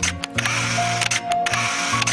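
Many rapid camera shutter clicks over background music with steady held notes.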